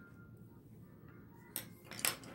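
Quiet room tone, then one brief handling noise about one and a half seconds in: a hand moving over the paper on a clipboard.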